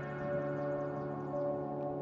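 Background ambient music: sustained, layered bell-like tones held steady, with a higher note entering about one and a half seconds in.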